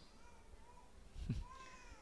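A pause in the speech with low background room tone, crossed by a faint, short, high-pitched vocal sound a little after a second in.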